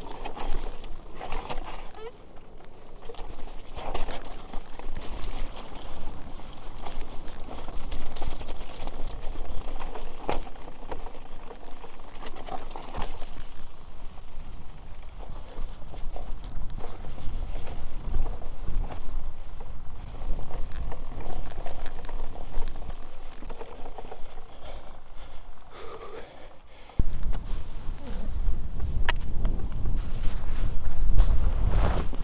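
Bike riding down a rough, bumpy track, heard from a camera on its mount: constant rattling and knocking over the ground. About 27 seconds in, a loud wind rumble on the microphone sets in.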